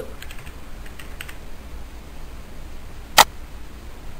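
Typing on a computer keyboard as a login password is entered: a few faint keystrokes in the first second or so, then one sharp, much louder click about three seconds in as the login is submitted.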